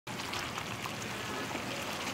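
Thick beef kalio sauce of chilli paste and coconut milk simmering in a pan, a steady bubbling hiss with small scattered pops.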